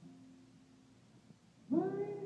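Live song: soft sustained instrumental notes, then near the end a high male voice comes in singing, much louder, with a sliding pitch.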